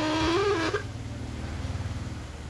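A short, high, wavering vocal call lasting under a second at the start, over a steady low hum.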